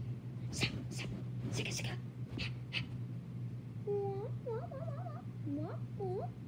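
A cat meowing several times in short calls that rise and fall, starting about two-thirds of the way in. Before that come a few short, scratchy rustling noises, and a steady low hum runs underneath.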